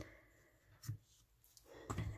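A single short snip of scissors cutting through embroidery floss, about a second in.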